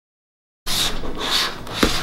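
Silence for about the first half-second, then a rough rubbing and scraping noise of cardboard boxes being handled on a table, with a single click near the end.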